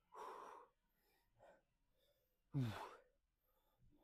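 A man's hard breathing from the effort of a set of leg curls: a sharp breath right at the start, then a loud voiced sigh falling in pitch a little past halfway.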